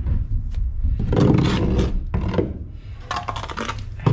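Mason's trowel spreading and scraping wet mortar along the top of a brick course. There are scraping strokes, the loudest about a second in and more near the end.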